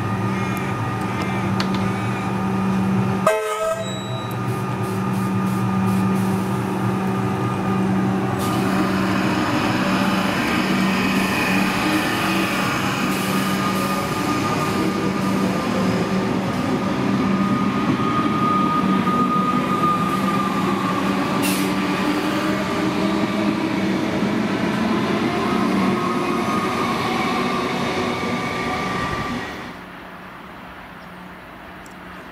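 Comeng electric suburban train standing at the platform with a steady hum. A sharp knock comes about three seconds in, and then the train pulls away, its traction motors whining in rising, shifting tones as it accelerates past.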